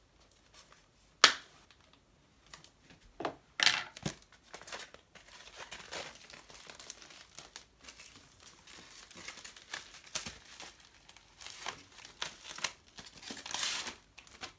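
Thin plastic packaging crinkling and tearing as it is handled and pulled open. There is a sharp snip of scissors about a second in, and the crinkling grows louder near the end.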